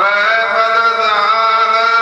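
A voice chanting Gurbani in the sung recitation of the Hukamnama, starting suddenly and sliding up into one long held note.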